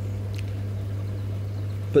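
Hozelock pond vacuum running steadily with a low, even hum as it sucks water out of the tank.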